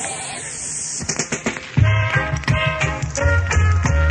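A reggae dubplate starting on the sound system. A rush of hissing noise and a few sharp hits come first, then a heavy bass line and the riddim come in a little under two seconds in.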